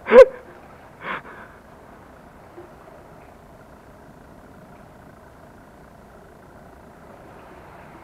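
A man's short laugh at the start, then a steady low rushing noise of outdoor sea air at the breakwater for the rest of the time.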